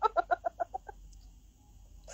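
A woman laughing: a quick run of short, high-pitched 'ha' bursts, about nine a second, that grow fainter and stop about a second in.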